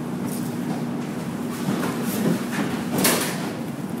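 A steady machine hum with a low, even tone, and a brief rushing, scraping noise about three seconds in.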